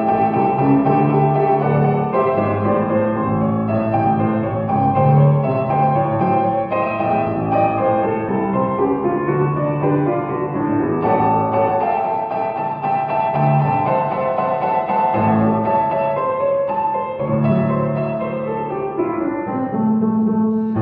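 Sampled Steinway Victory vertical piano (The Crow Hill Company's Vertical Piano virtual instrument) playing slow, sustained extended chords with dissonant added tones. The sound is muffled, its treble cut off.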